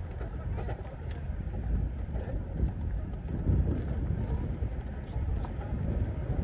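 Wind buffeting the microphone with a gusting low rumble, over the voices of people talking nearby and light ticking footsteps on a wooden boardwalk.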